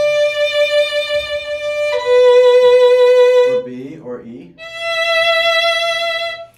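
Violin playing long bowed single notes with vibrato, each pitch wavering slightly: one note, a lower note about two seconds in, and after a short gap a higher note near the end. The waver comes from the left-hand finger rolling lower on the string and back.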